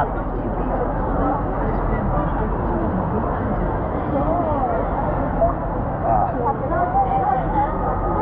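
Steady crowd hubbub in a busy indoor pool hall: many indistinct voices blending into a continuous background noise, with no single sound standing out.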